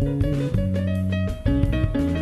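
Live jazz piano trio playing: grand piano, drum kit and electric bass guitar. Held low bass notes sit under the piano, with a short drop in level just before the bass comes back in strongly near the end.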